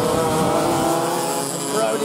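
Several two-stroke TAG racing kart engines running together on track, their steady tones overlapping and shifting slightly in pitch.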